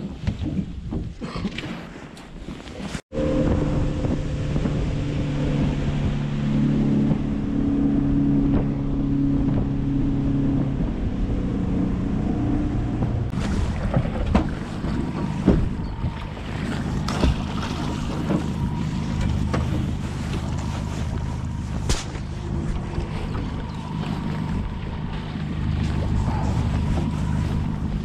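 Boat's outboard motor running steadily at low speed, its pitch easing down a little around eleven seconds in, with water and wind noise around it. It starts after a brief cut about three seconds in.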